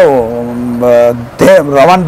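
Only speech: a man talking, who holds one drawn-out sound for about a second before carrying on.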